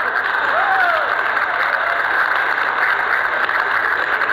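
An audience applauding in a large hall, a dense even clatter of clapping, with one short call from the crowd rising and falling about half a second in.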